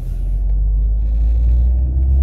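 Low, steady rumble of a car being driven, heard from inside the cabin; it swells at the start and then holds.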